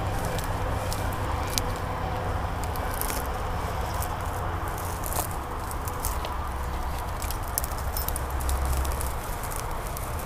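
Dry weeds and brush crackling and rustling with many quick clicks as people and a dog push through them on foot, over a steady low rumble.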